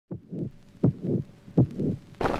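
Heartbeat sound effect beating three times, each beat a double pulse (lub-dub), about three-quarters of a second apart.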